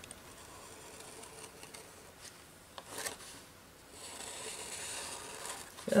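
Faint scratching and rubbing on paper as a pen outlines the edge of an art-journal page, with a longer stretch of scratching past the middle.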